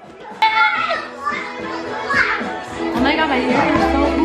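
Several voices, children's among them, chattering and calling out over each other, with music playing underneath.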